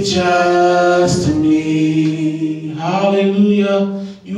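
Unaccompanied worship singing with no instruments, the voice holding long drawn-out notes. The pitch steps down about a second in and back up near three seconds.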